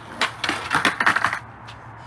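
Skateboard clattering on concrete during a missed kickflip: the tail snaps, then the deck and wheels hit the ground and bounce in a quick run of knocks lasting about a second.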